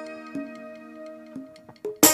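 Soft stage-band music: sustained keyboard notes with a few light clicking percussion ticks.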